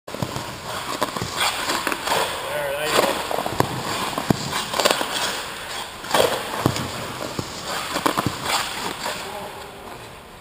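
Hockey goalie's skate blades scraping and carving on the ice during crease movement drills, with a series of sharp knocks as stick and pads hit the ice.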